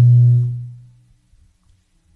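A sustained low keyboard note, steady and loud, fading out about a second in and followed by near silence.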